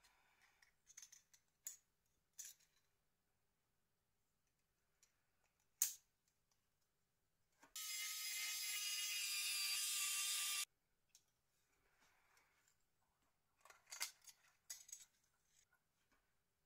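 Small plastic phone parts clicking and tapping as they are handled. About eight seconds in, a steady hiss of blown air from a handheld air duster, held to the Nokia N80's frame to clean it, lasts about three seconds and cuts off suddenly.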